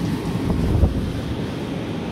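Wind buffeting the microphone: a steady low rumbling noise with one brief louder bump a little under a second in.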